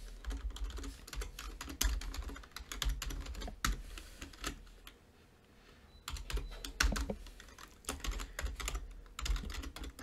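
Typing on a computer keyboard: irregular runs of keystroke clicks, with a pause of about a second and a half midway before the typing starts again.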